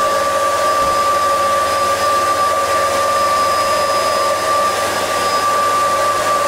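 Vacuum cleaner motor running steadily with its hose blocked off at the end: a constant rush of air with a steady whine over it.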